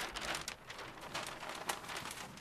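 Large sheets of easel-pad paper rustling and crinkling as they are lifted and turned over, a run of quick irregular crackles.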